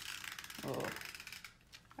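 Tape runner rolled along paper, laying down adhesive with a fast ratcheting click that stops about a second and a half in.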